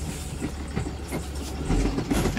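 Vehicle engine and road noise heard from inside the cab while driving, a steady low rumble that grows a little stronger near the end.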